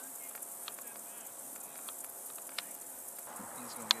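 Field insects keeping up a steady high-pitched buzz, with scattered faint clicks and one sharp click near the end.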